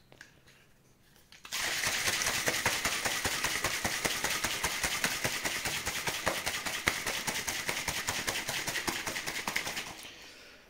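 A stainless-steel protein shaker, holding water and amino-acid powder, being shaken hard by hand to mix the drink: a dense, rapid sloshing rattle that starts about a second and a half in and keeps up steadily for about eight seconds.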